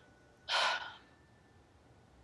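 A woman takes one short, sharp breath about half a second in, an upset, exasperated exhale rather than words.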